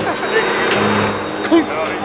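A truck's engine running steadily under load, with people talking over it.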